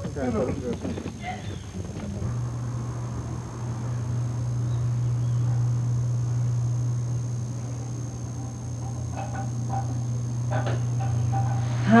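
A few brief voices at the start, then a steady low hum from about two seconds in, with a faint thin high whine throughout.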